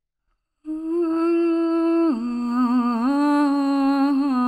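A woman's voice humming a slow, wordless tune: it starts about half a second in on a long held note, drops lower about two seconds in, then wavers through small ornaments.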